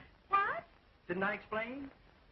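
A person's short wordless voice sounds. A brief high cry falls in pitch, then a longer two-part murmur follows about a second in.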